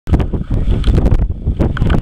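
Wind buffeting the camera's microphone: a loud, gusting low rumble.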